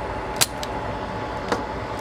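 Hand-held desoldering pump firing on a heated solder joint: one sharp snap about half a second in as it sucks the molten solder away, then a fainter click about a second later.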